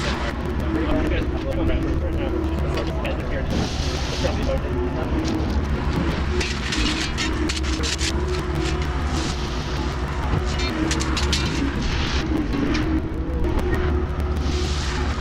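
Compact track loader's diesel engine running steadily as the machine works back and forth, with repeated stretches of scraping and clatter from its tracks and bucket on gravel.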